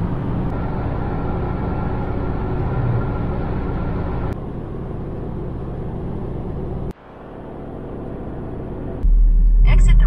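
Steady engine and tyre drone inside a car cabin at motorway speed, broken by two abrupt cuts. A louder low rumble comes in about a second before the end.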